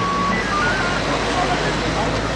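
Indistinct talk from a small group of people standing close by, over a steady low hum like an engine running.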